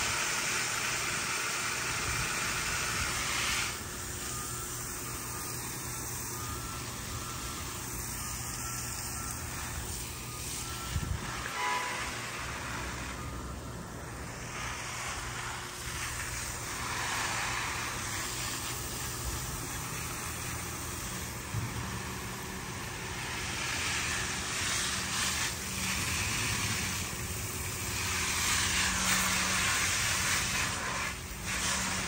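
Garden hose spray nozzle hissing steadily as its jet of water hits soil and leaves, a little louder near the end.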